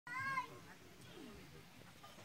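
A single short, high-pitched animal call, meow-like, right at the start, lasting under half a second.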